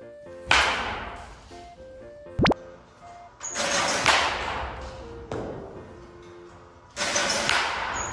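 A wooden baseball bat striking tossed balls into a batting net three times, each a sudden crack that fades over about a second, with one short sharp knock between the first two. Light plinking background music plays underneath.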